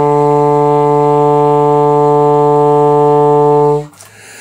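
Alto saxophone holding one long, low note without a change in pitch, cut off sharply near the end.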